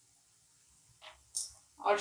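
Near silence for the first second, then two brief faint sounds, a short light click followed by a high hiss. A woman's voice begins at the very end.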